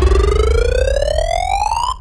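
A rising-tone sound effect that goes with a filling loading bar: one pitch climbing steadily for about two seconds, then cutting off suddenly, over a low steady bass.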